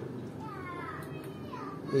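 Faint distant voices over a steady low background hiss.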